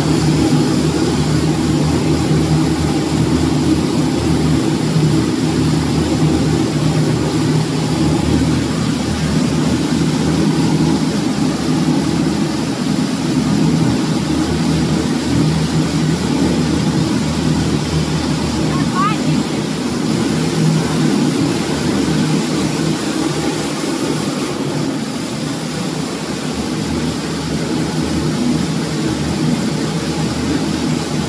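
High-speed BOPP tape slitting machine running at production speed: a steady mechanical hum and whirr from its rollers and rewind shafts as film is slit and wound onto rolls of tape.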